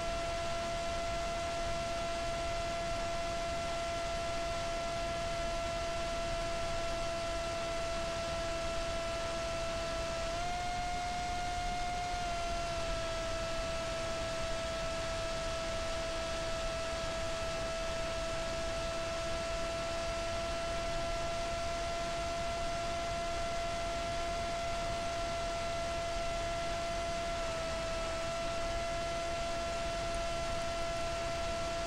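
Emax RS2205 brushless motor and propeller on a Z-84 flying wing, heard as a steady whine over air rush in flight. The pitch rises briefly about ten seconds in and dips for a moment near the end as the throttle changes.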